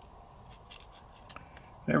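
A few faint, light clicks of small steel trigger parts being handled with needle-nose pliers as the sear pin is worked through the sear into the Ruger MK IV pistol frame.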